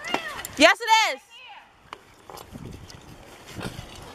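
A person's voice giving short high-pitched cries that bend in pitch, loudest about half a second to a second in, followed by fainter background noise and a few light clicks.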